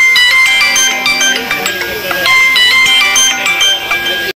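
A simple electronic melody of clean, bell-like tones stepping quickly from note to note, like a mobile phone ringtone.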